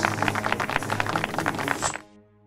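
Animated-logo audio sting: a fast run of clicks, about a dozen a second, over sustained music chords, with a bright high chime near the end just before the sound cuts off.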